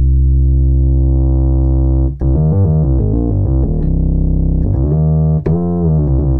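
Bass patch on the Arturia OB-Xa V software synthesizer played from a keyboard. A held low note turns brighter and buzzier over the first second as its filter is opened. A run of shorter notes follows, then one more held note near the end.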